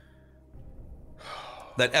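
A man's audible breath into a close microphone, a noisy gasp-like breath starting about half a second in and growing over about a second, just before he speaks.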